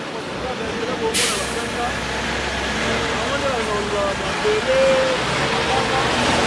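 Heavy diesel truck approaching slowly, its engine growing steadily louder, with a sharp hiss of air brakes about a second in.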